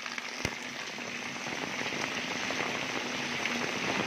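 Heavy rain pouring onto a flooded brick-paved lane and standing water, a steady hiss that grows slightly louder, with a brief click about half a second in.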